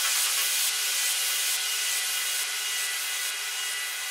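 Outro of an uplifting trance track: the kick drum has dropped out, leaving a high, filtered white-noise wash with faint held synth tones, slowly fading away.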